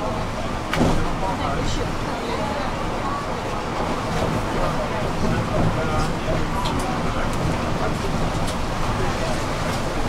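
Steady rumble of a city bus in motion, heard from inside the passenger cabin, with passengers talking indistinctly in the background. A single knock sounds about a second in.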